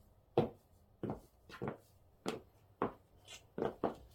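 Footsteps of platform cork-wedge mules with rubber soles on a wooden floor. There are about seven short knocks, roughly two a second, with the last two coming close together near the end.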